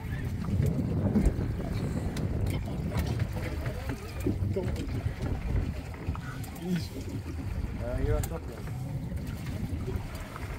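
Low, uneven rumble of wind and boat noise on the microphone at sea, with brief muffled voices in the background.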